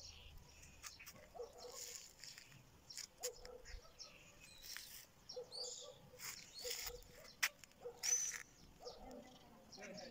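Faint outdoor ambience: distant, indistinct voices with a few scattered ticks and a short high bird chirp about eight seconds in.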